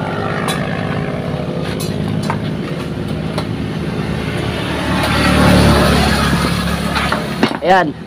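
Small motorcycle engine idling steadily, running after its starter was triggered by jumping the starter-relay wire. A louder rush of noise swells and fades between about five and seven seconds in.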